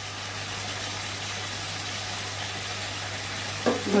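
Diced bottle gourd frying in a steel wok, a steady low sizzle with a constant low hum under it.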